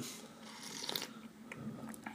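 Faint sipping of tea from small cups, a soft slurping hiss with a few small clicks.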